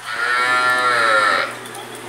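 A bovine moo: one long call lasting about a second and a half.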